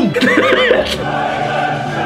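A brief voice-like sound, then a choir starts singing held, opera-like notes about a second in.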